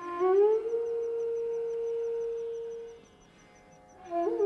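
Carnatic bamboo flute (venu) sliding up into one long held note that fades away about three seconds in, followed by a brief near-silent pause.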